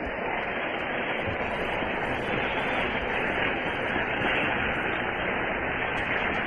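Steady static hiss with no voice, the background noise of an old, narrow-range radio or tape recording of a sermon, holding an even level throughout.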